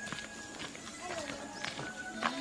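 Footsteps of a person walking on a dirt path: a series of short, sharp footfalls at an uneven pace, with a faint wordless melodic line over them.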